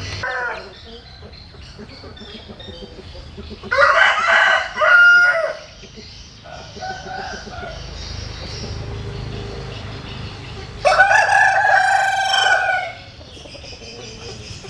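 Rooster crowing twice, each crow about two seconds long, with a fainter shorter call between the two crows.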